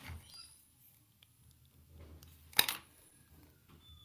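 Quiet handling noises with a few small clicks, and one sharp click about two and a half seconds in.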